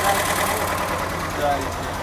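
LuAZ off-roader's air-cooled V4 engine idling steadily.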